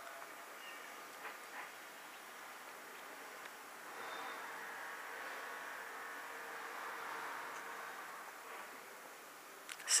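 Faint steady background noise with two soft clicks about a second in, swelling slightly for a few seconds in the middle before settling again.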